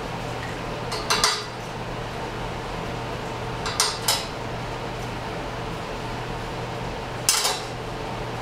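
A steel plate clinking and scraping against a welded steel frame as it is positioned by hand: three short bursts of metallic clanks, about a second in, around four seconds in, and near the end, over a steady low hum.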